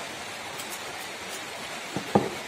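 A steady, even hiss of background noise, with a few faint crisp ticks between about half a second and a second and a half in, and a short knock just before the end.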